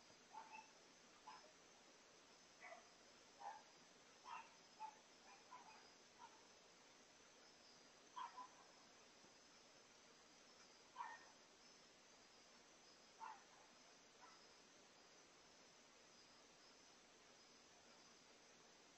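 Near silence: a faint, steady chorus of night insects, with about a dozen short, faint, irregular sounds, most of them in the first half and the strongest about eleven seconds in.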